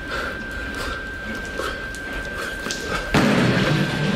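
Soundtrack of a music video playing: scattered clicks and knocks over a thin steady high tone, then a sudden loud thump about three seconds in, followed by heavier, fuller sound.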